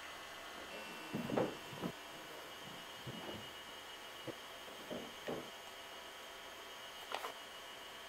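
Faint steady hum with a few soft, scattered clicks and knocks, most of them in the first half.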